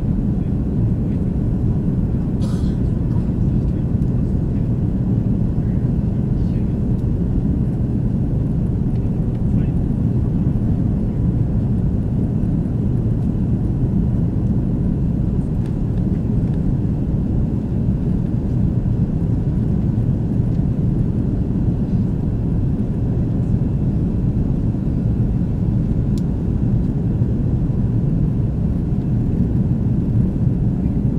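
Steady low drone of an airliner's jet engines and rushing air, heard from inside the passenger cabin during the climb after takeoff.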